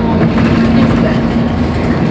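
Steady engine and road rumble heard from inside a moving road vehicle, with a constant low hum running under it.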